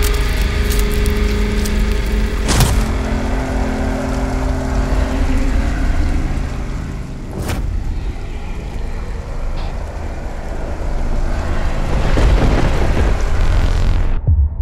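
Rain sound effect over low, sustained music tones, with two sharp thunder-like cracks about two and a half and seven and a half seconds in. The rain stops abruptly at the very end.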